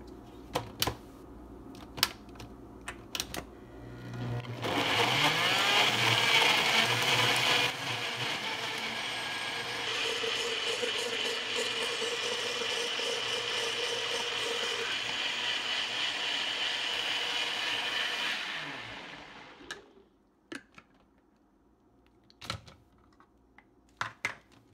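A NutriBullet blender starts about four seconds in after a few clicks of the pitcher being handled and blends fruit at full speed for about fourteen seconds. It is loudest for the first three seconds, then runs steadily a little quieter, and winds down near the end, with a few clicks of handling after it stops.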